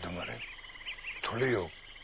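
A man's voice speaking a short phrase near the start and another about halfway through. Behind it runs a faint, rapidly pulsing chirr.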